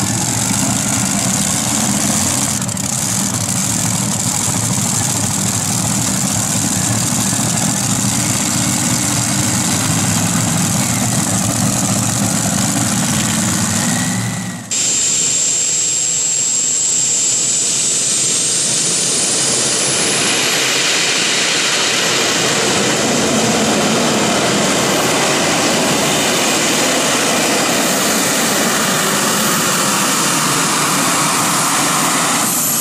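A multi-engine, supercharged piston modified tractor idling with a low, even rumble. About halfway through the sound switches to a modified tractor powered by several gas turbines: its high whine climbs steadily in pitch as the turbines spool up, then holds as a loud, steady rush as the tractor pulls.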